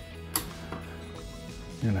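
Quiet background music with steady held notes, and one sharp plastic click about a third of a second in as the ice maker's control head is worked loose from its housing.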